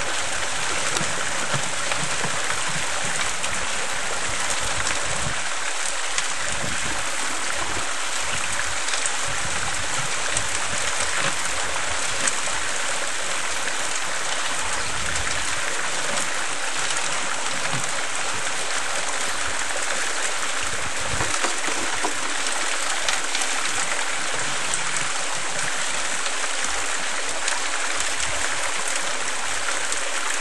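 Homemade mini gold trommel running: water spraying and splashing inside the turning screen drum as wet dirt tumbles through it, a steady rushing wash with scattered faint ticks.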